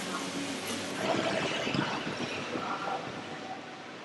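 Indoor pool hall ambience: a steady, reverberant background hiss with faint, indistinct voices.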